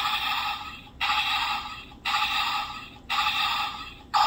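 Electronic sound effect from a battery-powered Bumblebee toy mask's small speaker, repeated about once a second, each burst starting abruptly and fading away.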